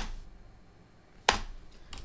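Two sharp clicks about a second and a half apart, with low room tone between them.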